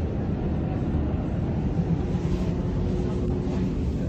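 Steady low mechanical rumble with a constant hum, unbroken throughout.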